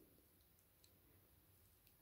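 Near silence: room tone, with two faint clicks.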